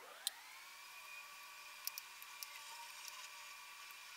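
Quiet room tone: a faint steady hum with a few soft clicks, one just after the start and a small cluster about two seconds in.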